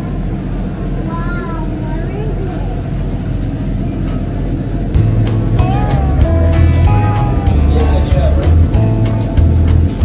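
Small passenger ferry's engine running steadily, heard from inside the cabin. About halfway through, background music with a heavy regular beat comes in and becomes the loudest sound.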